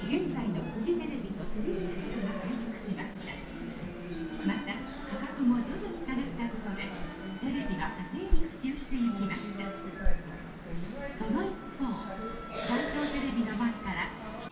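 Indistinct background voices of people talking, with no clear words, and two brief dull thumps, one about eight seconds in and one about ten seconds in.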